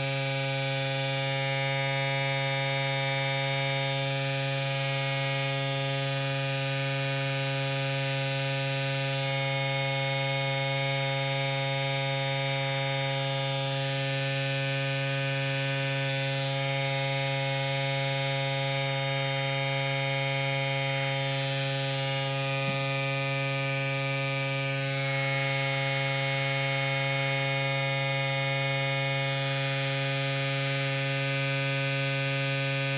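Small airbrush compressor humming steadily while the airbrush blows air over freshly stencilled nail paint to dry it, a hiss of air above the hum that shifts a few times.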